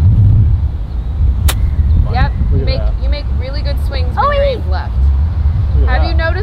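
A golf club striking the ball on a full approach shot: one sharp crisp click about a second and a half in, over a steady low rumble.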